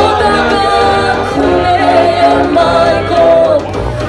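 A woman singing a sevdah song with a live Balkan brass band, her held notes wavering over trumpets and a sousaphone bass line.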